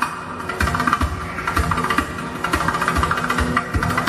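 Live hand percussion: after a brief lull, low drum strokes start about half a second in and go on in a steady rhythm, with sustained higher tones and light clicking strokes over them.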